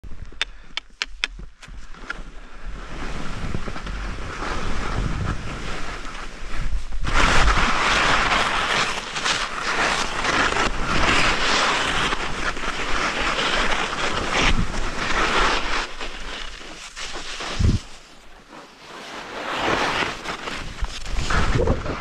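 Wind buffeting an action-camera microphone, picking up sharply about seven seconds in and gusting unevenly after that. A few quick clicks come near the start, and a single thump comes late on.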